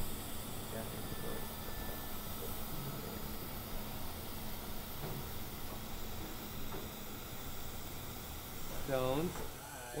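Room tone of a surgical teaching lab: a steady hiss with faint, indistinct voices in the background. A person's voice comes in clearly near the end.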